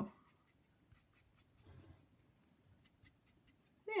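Faint strokes of a Copic alcohol marker on cardstock petals, blending colour in, heard as a scattered series of light short ticks.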